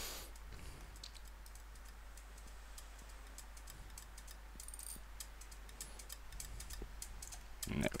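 Faint, irregular clicks of a computer mouse and keyboard being worked, over a low steady hum.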